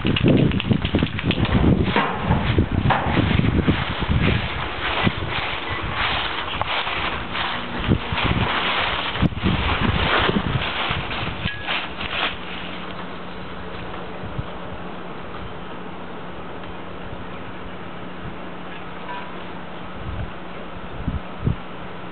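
Rustling and crunching of footsteps through dry fallen leaves for about the first twelve seconds, then a microwave oven running with a steady low hum.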